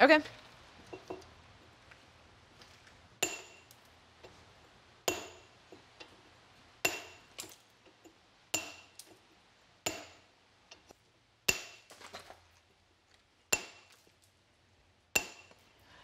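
Hammer striking a hand chipper (stone chisel) held against the top edge of a granite step: eight sharp metallic clinks roughly every two seconds, each with a brief ring. It is the chipping of the tread edge back to the line in rock-face (live edge) dressing.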